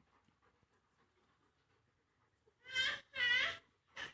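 German Shepherd dog giving two loud, high, wavering yelping cries close together near the end, with a shorter one right after, while scuffling with another dog.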